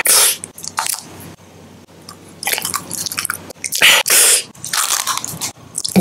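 Close-miked mouth sounds of a person biting and chewing candy, in irregular short bursts, with a quieter stretch about a second in.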